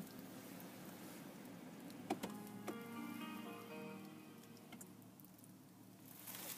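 A push-button engine start/stop switch on a 2018 Kia Optima LX clicks about two seconds in as the engine is shut off, followed by a short electronic chime of several stepped tones lasting a couple of seconds.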